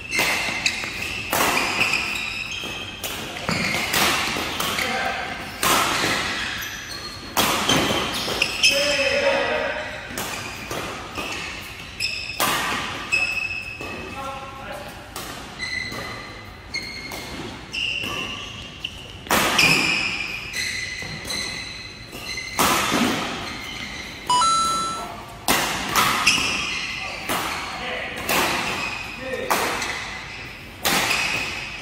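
Badminton rally: rackets striking a shuttlecock back and forth, a sharp hit about every second, each with a short echo in a large hall.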